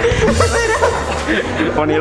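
A young man chuckling into his hand through a face mask, the laugh breaking up his attempt to speak; he starts talking again near the end.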